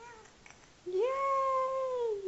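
A 4-month-old baby's long, drawn-out vocal whine, starting about a second in. It holds one steady pitch for over a second, then slides down at the end. A brief, fainter call comes at the start.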